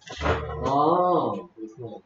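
Speech: a voice spelling out letters aloud, with one long drawn-out sound whose pitch rises and falls over the first second and a half, then two short syllables.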